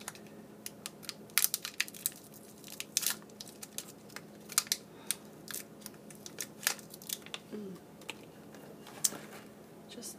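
Foil wrapper of a chocolate praline crinkling and crackling as it is peeled open by hand, in many irregular sharp crackles.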